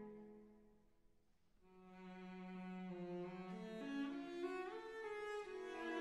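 Background music of slow bowed strings, cello and violin. A phrase fades out in the first second, and a new held note swells in about a second and a half in, with the line stepping upward in pitch near the end.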